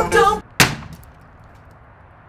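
Music cuts off, then a single sharp blow with a brief ring, a hammer striking a wooden pallet; faint background afterwards.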